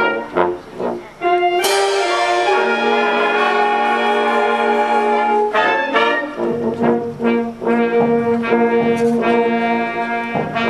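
Community concert band playing a march-style piece, led by trombones and trumpets. Short punchy chords give way, about a second and a half in, to a crash cymbal hit and a long held full-band chord. From about six seconds in, short rhythmic chords return.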